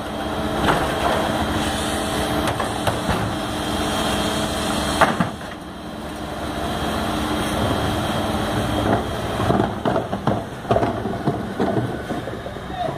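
Faun Rotopress garbage truck running with a steady hum as its bin lift tips and lowers a wheeled recycling bin into the continuously spinning drum. A sharp knock about five seconds in and a run of clattering knocks near the end.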